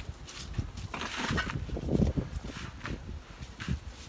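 Loose potting mix poured into a black plastic nursery pot, with a rustling pour about a second in and scattered knocks and thumps as the pots are handled.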